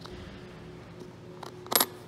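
Silver coins handled on a textured mat: a couple of faint clicks, then a short, sharp clack of a coin being set down near the end.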